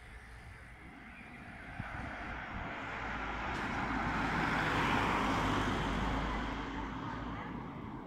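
A car driving past close by: its engine and tyre noise swells for about five seconds, then fades.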